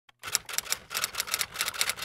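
Typewriter sound effect: keys clacking in a quick run of about six strikes a second, starting a moment in.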